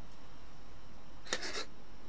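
A short knock and rattle of a small metal kettle lid being flipped over and handled, about a second and a half in, over a steady low hiss.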